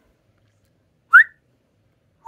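One short rising whistle about a second in, a person whistling a quick upward note; otherwise near silence.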